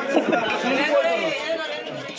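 Several people talking over one another: steady crowd chatter.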